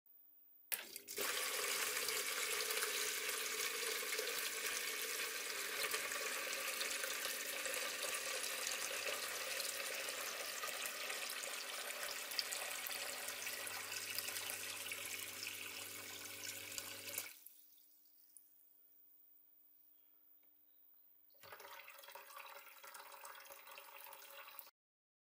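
Water from a small submersible pump's hose pours and splashes into a plastic bucket over the pump's low hum. The flow starts about a second in and cuts off abruptly after about 16 seconds, as the automatic level controller switches the pump off with the bucket full. A fainter run of water sound follows near the end.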